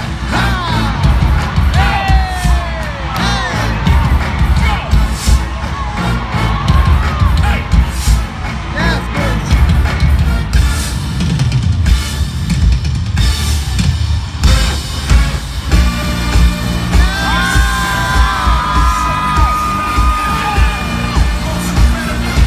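Live stadium concert music over the PA, with a heavy pulsing bass beat. Over it the crowd is cheering, whooping and yelling, and a few held notes sound near the end.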